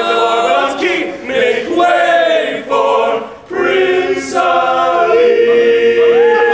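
All-male a cappella group singing held chords in close harmony, unaccompanied. There is a brief break about three and a half seconds in, then a short hiss, and near the end a long sustained chord with a higher voice gliding over it.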